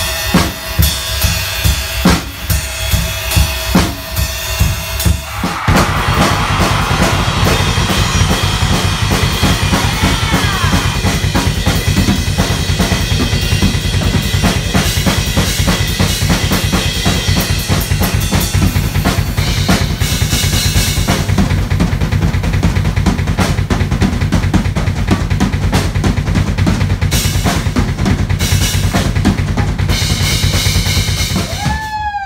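Drum kit being played: a steady beat of about two strokes a second, then about six seconds in it breaks into fast, continuous playing with cymbals that keeps going.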